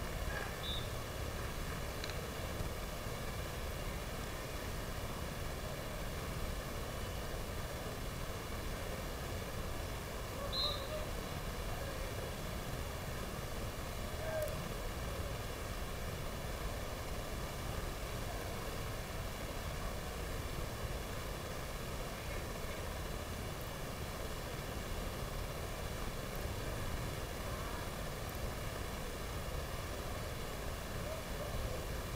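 Steady low background rumble and hiss of the venue's ambience, with faint indistinct voices. A few brief high chirps stand out, one about ten seconds in.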